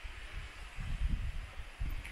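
Wind buffeting the microphone: a low, uneven rumble that swells and fades, strongest in the middle.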